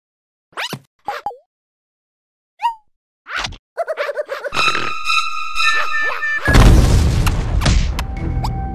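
Cartoon sound effects: a few short swishes and squeaks, then steady layered tones building from about four and a half seconds in. At about six and a half seconds a loud cartoon blast goes off and lasts over a second, leaving the characters covered in soot.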